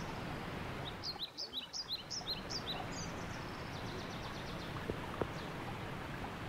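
A forest songbird singing a quick run of about ten short, high sweeping chirps over roughly two seconds, followed by a fainter rapid trill, against a steady background hiss. Two small clicks come near the end.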